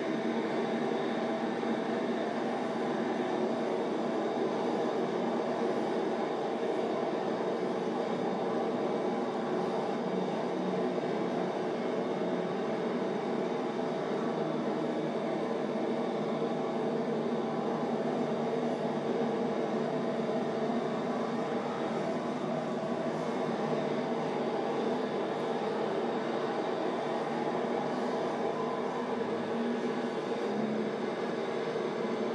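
Steady, unbroken rumbling noise with a constant hum running through it, like a vehicle or traffic running.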